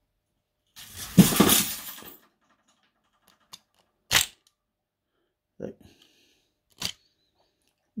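A clock movement being handled as its mainspring is let down with a wooden-handled key: a rough rattling burst about a second in, the loudest sound, then a few sharp metallic clicks.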